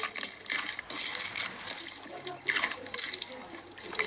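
Slime mixed with foam beads being pressed and squished by hand, giving irregular crackly, crunchy bursts that fade near the end.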